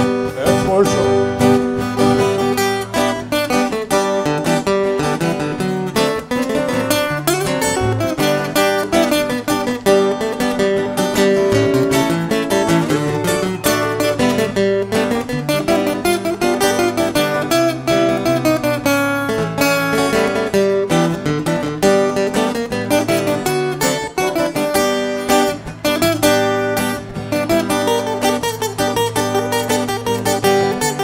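Two acoustic guitars playing live through a PA, an instrumental break in a country-rock song with strummed chords and quick picked notes, without vocals.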